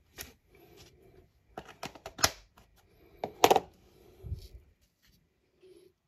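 Handling noises on a workbench: a scattered run of light clicks and knocks as a small miniatures base is picked up and moved about on a cutting mat, with a soft low thump a little after four seconds in.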